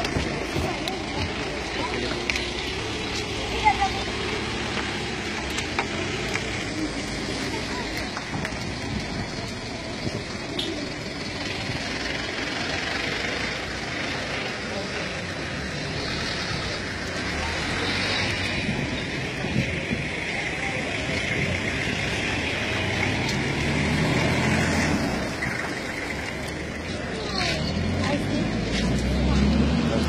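Indistinct voices mixed with vehicle engine and traffic noise, the low engine rumble swelling twice in the second half.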